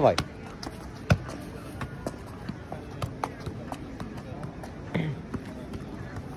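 A football being juggled and kicked on a paved square: irregular short thuds of the ball against feet, the loudest about a second in.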